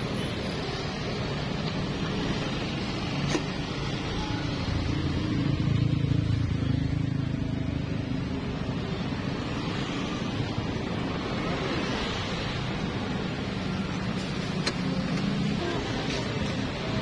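Steady street background noise with road traffic running past, swelling about six seconds in as a vehicle goes by. Two faint clicks stand out, one a few seconds in and one near the end.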